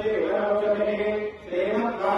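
A male priest chanting Sanskrit puja mantras in a steady recitation tone, amplified through a microphone. The chant breaks for a breath about one and a half seconds in.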